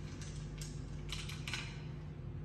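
Hard Ayo seeds being dropped one by one into the hollows of a wooden Ayo board, a run of about seven light clicks in the first second and a half.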